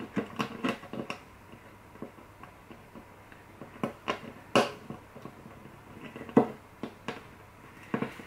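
Light, scattered clicks and ticks of fingers handling a classical guitar string as it is pulled through the tie block of the bridge, with sharper ticks about four and a half and six and a half seconds in.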